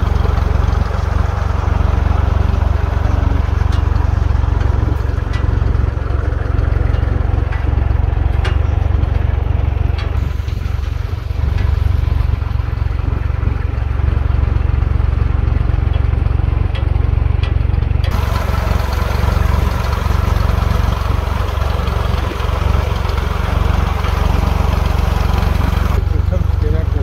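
Farm tractor engine running steadily as the tractor drives over a rough dirt track, with a few light clicks and knocks over the engine.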